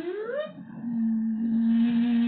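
A man's voice humming: a tone that slides up in pitch in the first half second, breaks off briefly, then settles into a steady held hum from about a second in.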